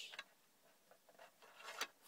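Near silence with a few faint clicks from fingers handling a small toy vehicle, the sharpest near the end.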